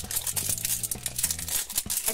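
A sticker seal being peeled and torn off a plastic surprise ball: a rapid, irregular crackle of tearing and crinkling.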